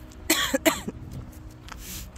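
A person sniffling from the cold: two sharp sniffles in quick succession, then a softer one near the end.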